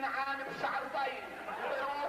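Several voices talking at once, with faint music underneath.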